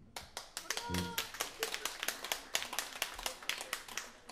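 Applause from a small audience: many separate hand claps, thinning out near the end.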